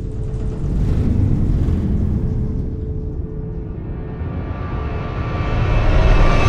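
Film trailer soundtrack: dark, ominous music over a deep low rumble, with a held tone. It swells steadily louder towards the end.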